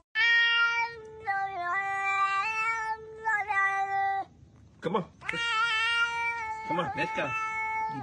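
Grey-and-white domestic cat yowling in long drawn-out meows. The first call holds one pitch for about four seconds with a few small dips, and a second, shorter call follows after a brief gap. Short, choppier calls come near the end.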